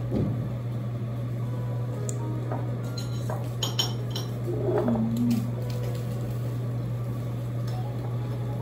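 Tableware at a restaurant table: scattered light clinks of glass, dishes and cutlery, bunched together a little past the middle, over a steady low hum.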